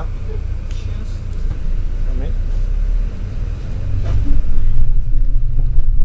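Double-decker bus engine and road rumble heard from inside on the upper deck, a steady low drone that grows louder about four and a half seconds in.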